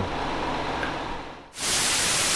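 Low steady room hum fading away, then about one and a half seconds in a loud, even hiss of television static begins abruptly.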